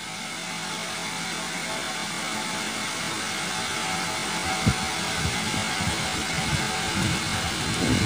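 Soft background music, with low notes coming in from about halfway and the level slowly rising.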